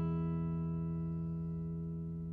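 All-mahogany Orangewood Oliver acoustic guitar, its final strummed chord left ringing and slowly fading away.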